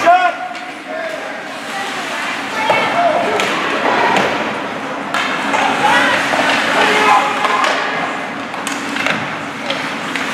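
Ice hockey rink sound: spectators' voices and chatter echoing in a large arena, with scattered clicks and knocks of sticks and puck on the ice and boards. A sharp knock right at the start comes as a shot is taken.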